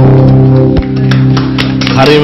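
Live band of electric bass, electric guitar and keyboard holding a sustained chord over a steady low bass note, with one new note struck a little under halfway through.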